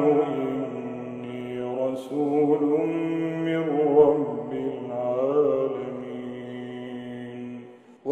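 A man's voice in melodic Quranic recitation (tajweed), drawing out a long sung line with slow pitch turns that fades away near the end.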